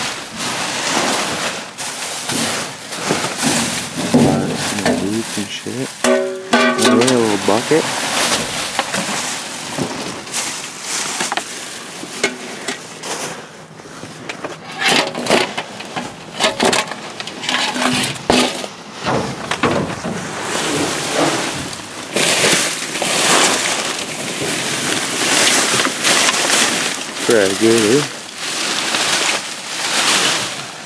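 Plastic bags, bubble wrap and cardboard boxes rustling and crinkling as someone rummages through a dumpster full of bagged trash. The crackling is close and continuous, with irregular bursts as things are pushed aside.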